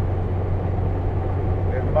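Steady road and engine noise of a car driving at highway speed, heard inside the cabin as an even low drone.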